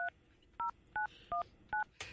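A phone number being dialed on a touch-tone keypad: five short two-tone beeps, about three a second.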